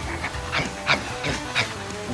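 A man's voice making several short, breathy exclamations, over a low steady hum.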